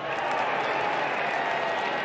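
Large golf gallery applauding, a steady wash of clapping that swells up and holds, the crowd's response to a short par putt being holed to extend a playoff.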